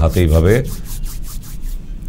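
Two palms rubbed quickly back and forth against each other, about eight strokes a second for a little over a second, after a man's voice breaks off about half a second in.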